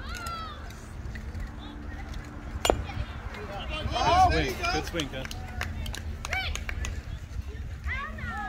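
A single sharp crack of a youth-baseball bat striking the ball, about two and a half seconds in. Raised voices of players and spectators call out a second or so later.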